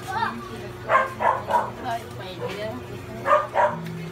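A dog barking several times in short bursts, with a couple about a second in and a pair near the end.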